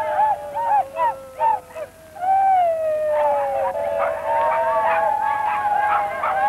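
Several voices calling together in high, overlapping hoots: long held calls that slide slowly downward, with short rising-and-falling whoops between them, as in a dance chant.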